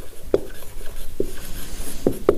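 Marker pen writing on a whiteboard: quiet scratching strokes, with sharper ticks about a third of a second in and again just after a second.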